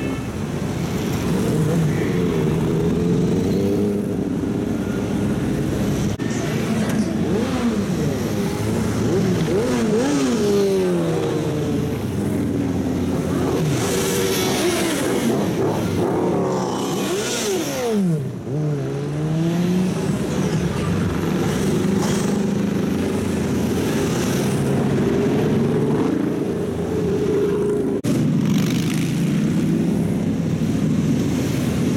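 Many motorcycles riding past one after another in a column, engines running and revving, the pitch of each falling as it passes, with sharp drops about ten and eighteen seconds in.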